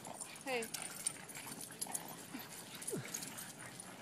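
Boston terriers at play, with one short dog whine that slides down in pitch about three seconds in, among scattered light clicks and scuffles.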